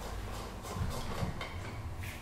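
Low, steady room rumble with a few faint knocks from objects being handled on a table.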